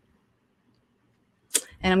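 Near silence for about a second and a half, then a short sharp intake of breath as a woman starts to speak.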